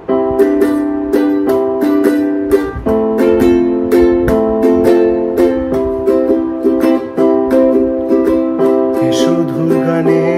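Ukulele strummed in a steady rhythm during an instrumental break between sung lines of a Bengali song, with held chord tones sounding underneath. A singing voice comes back in near the end.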